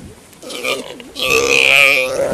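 Galapagos sea lion calling: a short call about half a second in, then a long, loud call from just past a second in.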